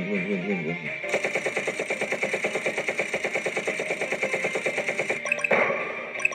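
Trailer soundtrack: a wobbling, warbling tone breaks off about a second in into music over rapid, even rattling like machine-gun fire, with louder sharp bursts near the end.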